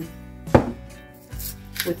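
A single sharp knock about half a second in, over quiet background music.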